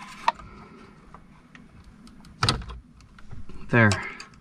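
Small plastic clicks and rattles of a steering-wheel wiring connector being squeezed and worked loose by hand, with a sharp click about a third of a second in and a louder knock about two and a half seconds in.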